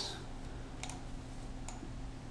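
Two faint short clicks at a computer, about a second apart, over a low steady hum.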